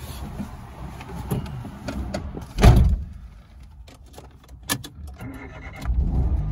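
Light clicks and key jangling in a small car's cabin, with one heavy thump about halfway through. Near the end the starter cranks briefly and the Peugeot 107's engine catches and starts on the button.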